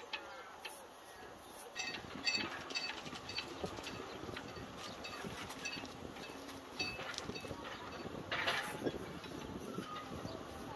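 Outdoor ambience with repeated short, high bird chirps, small clicks, and a brief rasping burst near the end.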